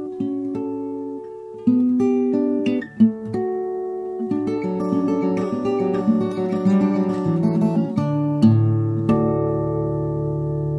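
Solo acoustic guitar fingerpicked, playing a jingly melody of plucked, ringing notes over a bass line, with deeper bass notes sounding from about eight seconds in.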